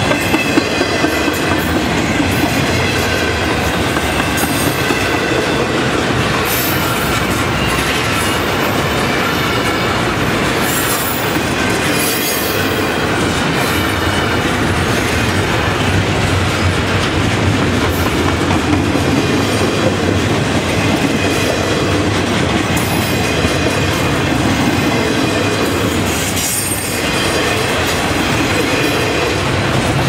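Double-stack intermodal freight train's cars rolling past close by at speed: a steady loud rumble with steel wheels clacking over the rail joints.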